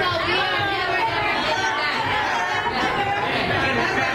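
Crowd of diners chattering, many voices talking over one another in a large, busy dining room.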